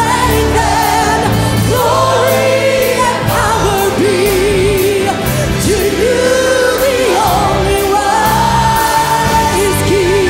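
Worship praise team singing with a live band: a woman's lead voice holds long notes with vibrato over backing singers, bass and drums with cymbals.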